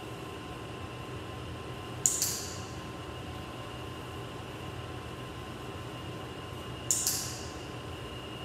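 Two sharp clicks about five seconds apart, typical of a dog-training clicker marking the moment the dog gets a shaped behaviour right. Under them runs a steady mechanical hum.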